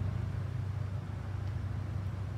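A steady low hum under an even outdoor background hiss.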